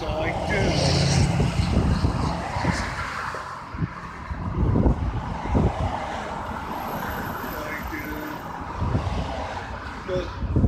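Road traffic: cars passing by on a multi-lane road, a continuous noise that swells and fades as they go.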